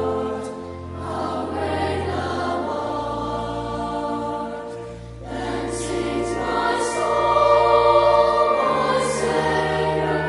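Choir singing over a held low accompaniment, in slow sustained phrases. The sound dips briefly about a second in and again about five seconds in, between phrases.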